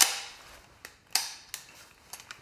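Sharp metallic clacks from a SIG PE 90 rifle, the semi-automatic civilian version of the Swiss Stgw 90, as it is handled and inspected. There is one clack at the start, a louder one a little over a second in, and lighter clicks between them.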